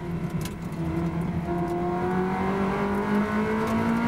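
Ferrari 360 Challenge race car's V8 engine heard from inside the cockpit, running under load, its note rising slowly as the car accelerates.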